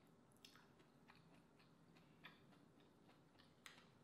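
Faint closed-mouth chewing of a mouthful of baked mussel, with small wet mouth clicks every second or so. Near the end a metal spoon clicks against a mussel shell.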